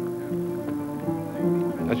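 Background music: a guitar playing a slow melody of held notes.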